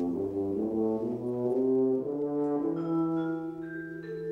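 Tuba playing a phrase of short, moving notes, then settling onto a long held low note. Higher vibraphone tones come in near the end.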